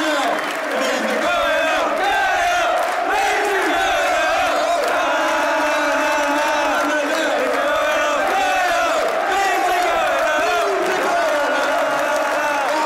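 Stadium crowd of football fans chanting and cheering together, loud and steady, thousands of voices holding a shared sung line.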